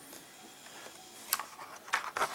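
Quiet room tone with two light clicks, one a little past the middle and one near the end, from twisted copper wire being handled and set down on a plastic work surface.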